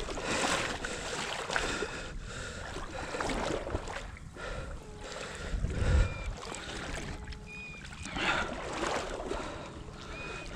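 Shallow water sloshing and splashing around a hunter's legs as he wades, in uneven swells, with a low bump on the microphone about six seconds in.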